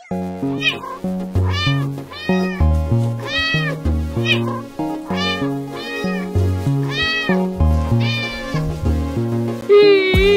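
Cat meows set to a tune over electronic music with a stepping bass line: about a dozen meows, each rising and falling in pitch, coming every half second or so in a song made of meows.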